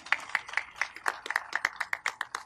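Scattered clapping from a few people, sharp irregular claps several times a second.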